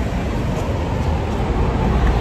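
Steady road-traffic noise: a constant rushing sound with a heavy low rumble.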